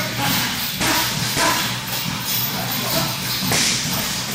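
Two grapplers scuffling and shifting on a vinyl training mat, with irregular rustles and soft thuds of bodies and gloves as one moves into mount.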